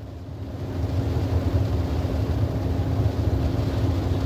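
Low vehicle rumble heard inside a car's cabin, swelling about half a second in and then holding steady, with a faint steady hum under it.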